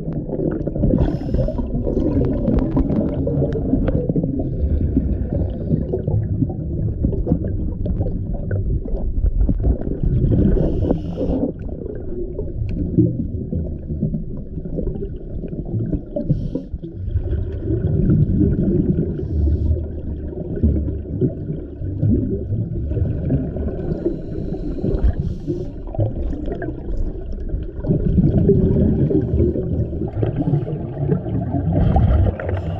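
Underwater sound from a diver's camera: a muffled, low gurgling rumble of a scuba diver's regulator and exhaled bubbles, swelling louder every several seconds.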